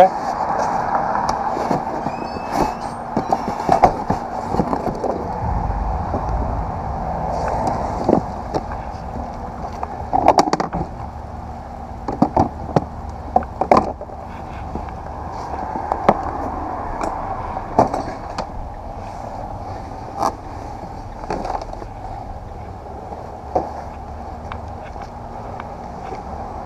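Boxes and cased guitars being handled and carried, with scattered knocks and bumps as they are picked up and set down, over a steady background hum.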